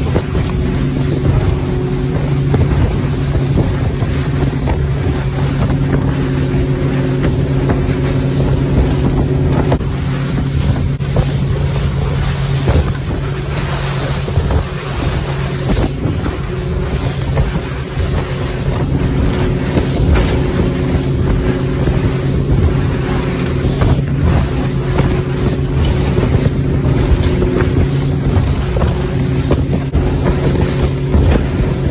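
Motorboat engine running at a steady pitch under the rush of water and spray thrown off the hull at speed, with wind buffeting the microphone.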